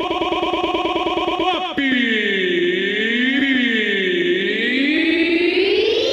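Electronic sound effects from a sound-system jingle: a rapidly pulsing synth chord for almost two seconds, then a synthesized tone that swoops down and back up twice before starting a long rising sweep near the end.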